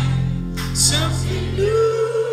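Live band music at a concert: sustained low bass notes under guitar, with brief sung phrases and a long held note coming in near the end.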